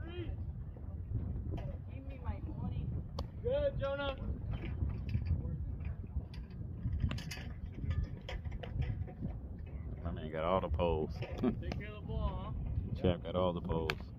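Players' voices calling and shouting across a baseball field in short bursts, mostly near the end, over a steady low rumble, with a few sharp clicks.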